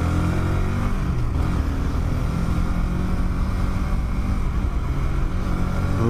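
Honda CBR150R single-cylinder four-stroke engine running under way. Its pitch falls through the first second or so, then holds steady, over a steady rush of wind and road noise.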